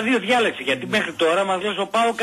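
Only speech: a person talking without pause.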